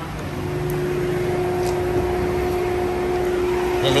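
Steady hum of the 2018 Chevrolet Sail's 1.5 L engine running at idle, heard at the front of the car, getting a little louder in the first second.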